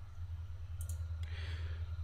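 Two faint computer mouse clicks, a little under a second in and just over a second in, over a low steady electrical hum.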